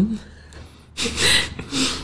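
A person's breath close to a microphone: after a short pause, two breathy rushes of air about a second in, with no voice in them.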